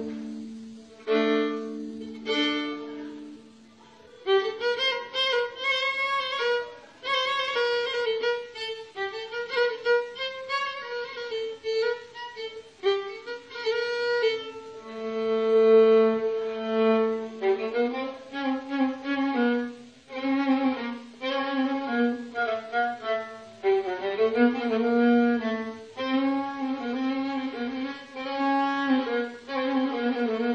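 Violin (kamanja) playing a Middle Atlas Amazigh melody. It opens with long held notes, dips briefly about four seconds in, then goes on in quick ornamented phrases broken by sustained notes.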